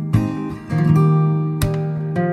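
Background music: acoustic guitar strumming and picking chords.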